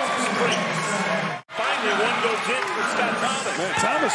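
Basketball game on a hardwood court: sneakers squeaking and a ball bouncing, over arena crowd noise. The sound drops out suddenly for a moment about a second and a half in.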